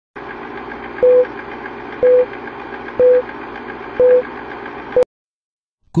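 Film-leader countdown sound effect: a steady projector-like rattle with a short mid-pitched beep once a second, five beeps in all. It cuts off suddenly about five seconds in.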